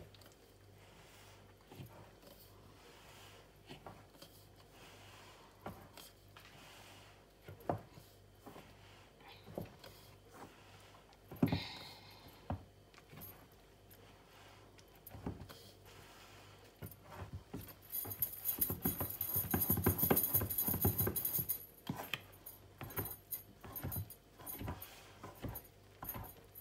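Wooden spoon stirring and scraping rice flour into liquid in a stainless steel bowl, with the gold bangles on the stirring wrist jingling. Scattered light clicks and taps at first, becoming busier and louder in the last third with a burst of jingling, then easing again.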